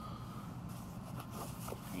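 Faint rustling and handling of a quilted fabric makeup bag and the items going into it, a few short scratchy sounds over a low steady hum.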